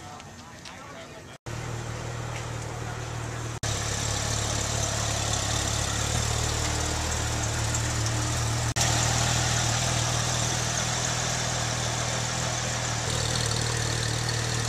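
Porsche 911 GT3 RS 4.0's flat-six engine idling steadily, starting about a second and a half in, with two brief dropouts.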